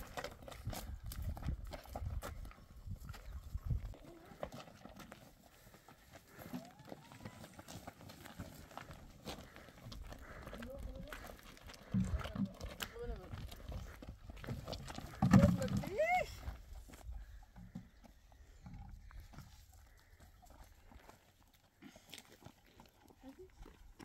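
People's voices that the recogniser did not turn into words, over scuffing and thumps, with one loud rising call or cry about fifteen seconds in.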